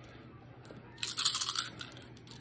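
Dice rattling as a handful is rolled: a dense burst of sharp clicks about a second in, lasting under a second.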